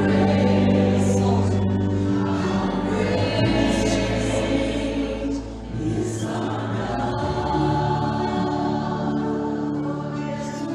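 Live gospel worship music: several vocalists singing together over a band with guitars, with long held notes.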